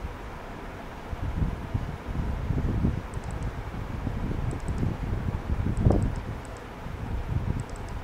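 Low, uneven rumbling noise picked up by the microphone, swelling a little around the middle, with a few faint clusters of short high ticks.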